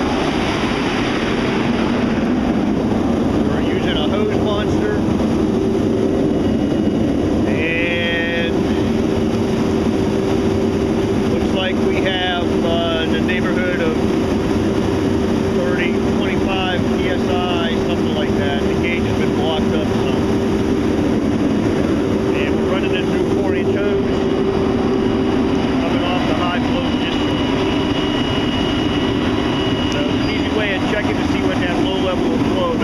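A fire engine's Cummins ISL9 diesel runs steadily at pumping speed, about 1,400 rpm, while the pump drafts, and water rushes out of a 2-1/2-inch hose monster flow-test device. Indistinct voices come and go over it.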